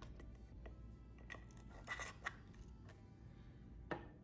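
A few faint clicks and taps as small plastic powder containers and a measuring spoon are handled on a tabletop, the sharpest one just before the end.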